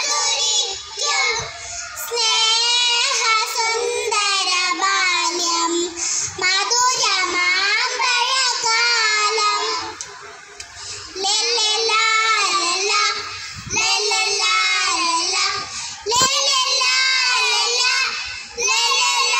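A group of young children singing a Malayalam song together in unison into stage microphones, in phrases with a short pause about ten seconds in.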